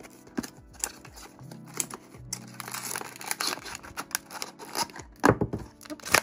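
Cardboard blind box torn open along its perforated top, then a foil blind bag crinkling as it is pulled out and handled, with a few sharp taps near the end. Soft background music plays underneath.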